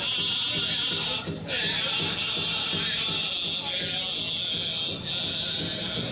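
Pow wow drum struck in a steady, even beat, with a group of singers over it.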